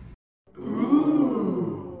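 A person's voice making one drawn-out, wordless sound that rises and then falls in pitch, starting about half a second in after a brief silence.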